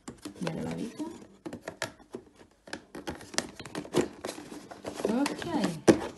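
Green plastic lid of a small storage box being pushed and pressed shut in a crowded drawer: a string of short plastic knocks, clicks and scrapes as it is forced down.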